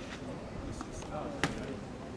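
A tennis ball struck by a racket, one sharp crack about one and a half seconds in, during a rally; faint voices in the background.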